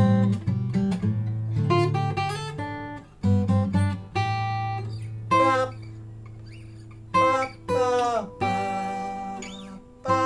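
Olson SJ steel-string acoustic guitar with a cedar top and Indian rosewood back and sides, picked in short phrases of single notes and chords. A low bass note rings on for about three seconds in the middle, and a few notes slide in pitch near the eight-second mark.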